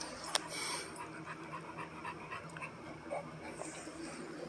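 Dog chewing on a bone: a string of short clicks and scrapes, with one sharp click about a third of a second in.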